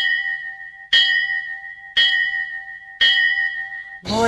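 A bell struck four times, about one stroke a second, each stroke ringing out and fading before the next.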